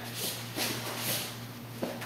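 Soft rustling and shuffling of gi cloth and bodies moving on a foam mat, with a small knock near the end, over a steady low hum.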